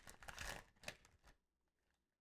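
Foil trading-card pack wrapper crinkling and tearing as it is opened, in a few short faint bursts during the first second.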